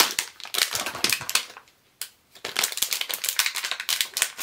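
Packaging of a blind-box enamel pin being opened by hand: rapid crinkling and crackling, with a short pause about halfway through.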